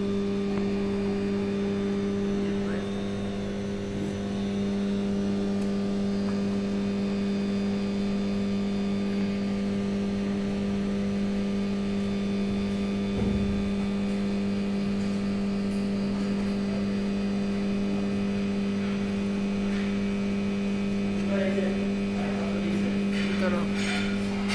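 Steady electrical hum of an energised substation power transformer: an even low drone with a second tone an octave above it, unchanging throughout. A brief low bump is heard about halfway through.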